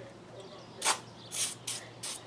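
Aerosol can of Liquid Wrench spraying lubricant into a two-stroke cylinder bore ahead of honing: three brief hisses in the second half.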